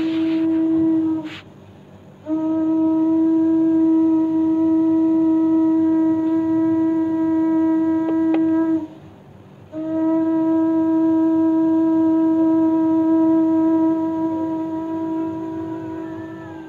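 Conch shell (shankha) blown in long, steady notes of one pitch: a note ending about a second in, then two long blasts of several seconds each, separated by short breaths.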